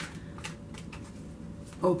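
Tarot deck being shuffled by hand: a run of light, quick card flicks and slaps.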